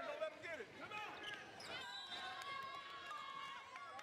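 Basketball sneakers squeaking on a hardwood court during play, with a few ball bounces and spectators' voices in a large hall. A steady high tone runs through the second half.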